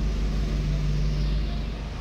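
Ford Transit motorhome's engine running as it creeps along at low speed, heard from inside the cab: a steady low rumble with a constant hum, fading near the end.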